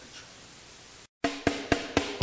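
Quiet room tone for about a second, then a sudden cut and a heavy-metal backing track starting with a quick run of sharp drum hits.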